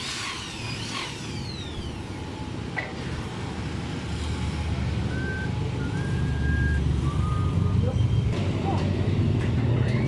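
A motor vehicle's low engine rumble, growing louder through the second half, with a few short high beeps in the middle and some high falling squeals in the first two seconds.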